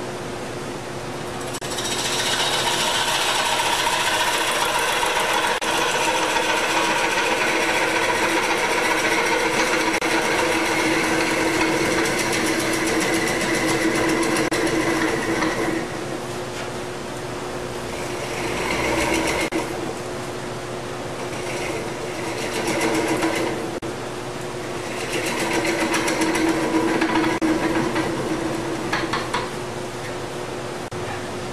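Wood lathe spinning a large wooden workpiece while a hand-held turning tool cuts it. A steady humming tone runs under a loud, rough cutting noise that lasts from about two seconds in to about halfway, then comes back in three shorter cuts.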